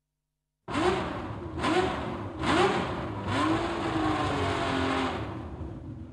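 Race car engine accelerating hard through the gears, starting suddenly a moment in: three or four quick rising revs, each cut by a gear change, then a longer held pitch that slowly falls and fades.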